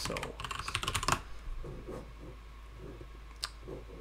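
Typing on a computer keyboard: a quick run of keystrokes in the first second or so, then a single click near the end.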